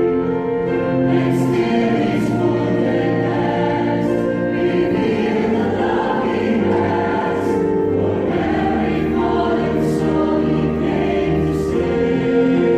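Church choir singing an Easter hymn in sustained harmony over a low, steady bass line from a wind ensemble accompanying them.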